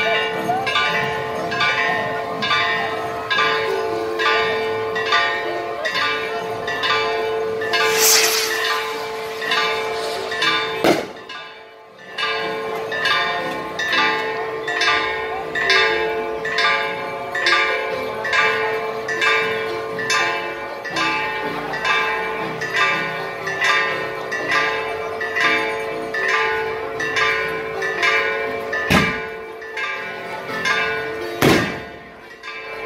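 Church bells ringing fast and evenly, about two strokes a second, with a steady hum carrying between the strokes. A brief rushing noise cuts across about eight seconds in, and the ringing dips for about a second a few seconds later.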